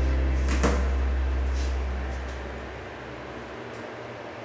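The last low bass note of a karaoke backing track dying away over about three seconds, with a single sharp click about half a second in and a few faint rustles.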